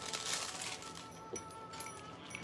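Quiet background music playing steadily, with a brief crinkling rustle in the first half second as a clear plastic jewelry bag is handled.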